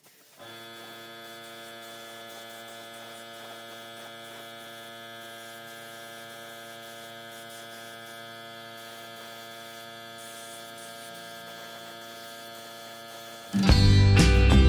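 Steady electrical hum with many evenly spaced overtones. It starts abruptly just after the beginning and holds unchanged until loud music cuts in near the end.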